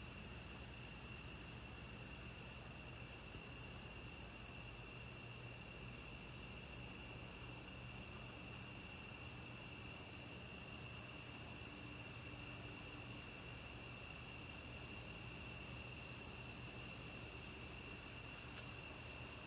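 Faint, steady chorus of crickets trilling without a break, in two high pitch bands, over a weak low hum.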